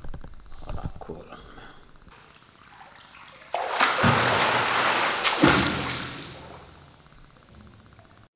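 Pool water splashing loudly as a swimmer strokes away close to the microphone, starting suddenly about three and a half seconds in with two heavy slaps on the water, then fading to lapping.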